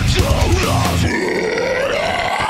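Brutal deathcore music: a guttural screamed vocal over heavy guitars and fast drums. About halfway, the drums and low end drop out and the scream is held alone over the guitar.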